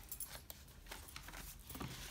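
Faint rustling and light clicks of paper pages being handled and turned in a spiral-bound handmade journal.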